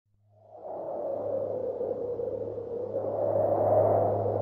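Atmospheric opening sound effect: a hazy drone that fades in from silence within the first second and slowly swells, over a steady low hum.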